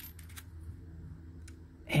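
Quiet room tone with a steady low hum and a few faint, light clicks as a soldering iron is handled.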